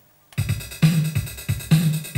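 E-mu Drumulator drum machine starting a drum pattern about a third of a second in, with kick, snare and cymbal hits in a steady beat, clocked from an Apple Macintosh sequencer.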